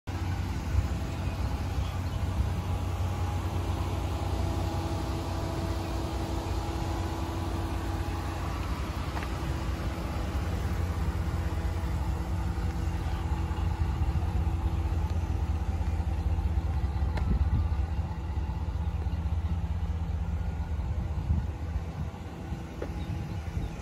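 2015 Ram 1500 pickup's engine idling: a steady low rumble with a faint hum over it.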